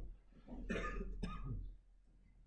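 A person coughing, in two rough bursts starting about half a second in, as loud as the nearby speech.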